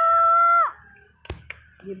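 A person's voice calling out in one long, high, held note that cuts off under a second in, followed by two sharp clicks and a short spoken word near the end.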